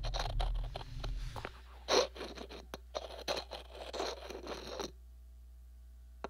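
Experimental sound performance of irregular scratching and scraping strokes, played as an interpretation of a graphic score. A low rumble underneath stops about a second and a half in, and the scraping breaks off into a quiet pause about a second before the end.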